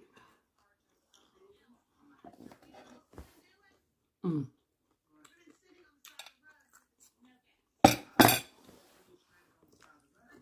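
Two sharp clatters of dishware, about half a second apart near the end, amid faint rustling of a loaded taco being handled over a plate.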